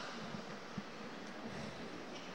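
Quiet room tone of an indoor bocce hall: a steady low hiss with a few faint, soft knocks, the clearest a little under a second in.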